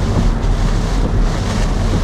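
Steady road, tyre and engine noise with a low drone inside the cabin of a Mercedes-AMG A45 on the move.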